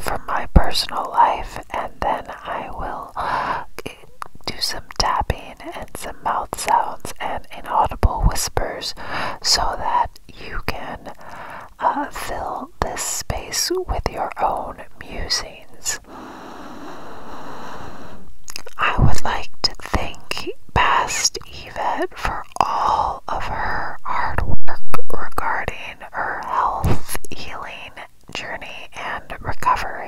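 Unintelligible ASMR whispering close to the microphone, breathed into a cupped hand and a rhinestone-covered box held at the lips, with many sharp mouth clicks. A little past halfway, a long breathy hiss swells over about two seconds.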